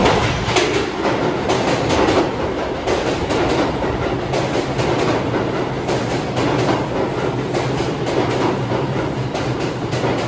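An R142 (5) express subway train pulling into an underground station and passing close by: wheels clicking sharply over the rail joints around the start, then a steady rumble that eases off a little.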